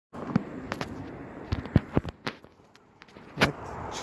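Footsteps on pavement with knocks from the handheld phone as a person walks: irregular sharp clicks and scuffs, about seven in all, with a short quiet spell about two and a half seconds in.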